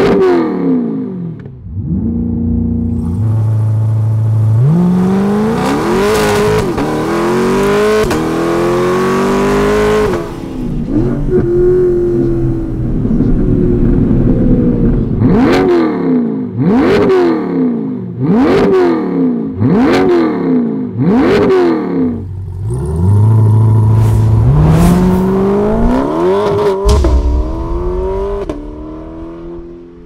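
C8 Corvette V8 through a Paragon Performance titanium cat-back exhaust, accelerating hard and climbing in pitch in several steps as it shifts up through the gears. Midway comes a run of about six short, sharp revs about a second apart. Then it pulls up through the gears again and fades near the end.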